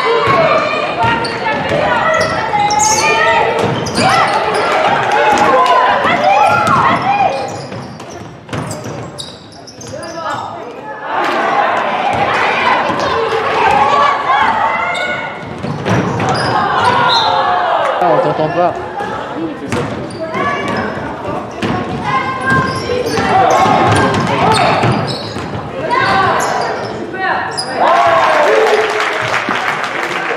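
A basketball game in an echoing sports hall: the ball bouncing on the wooden court while players, coaches and spectators shout.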